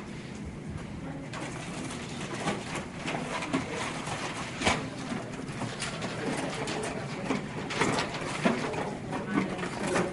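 Classroom handling noise: rustling and scattered light clicks and knocks of craft supplies and scissors being handled on tables.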